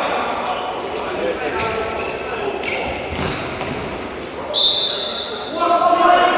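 Futsal match in an echoing indoor hall: the ball thudding on the court amid voices, then a referee's whistle blown once, for about a second and a half, starting about four and a half seconds in.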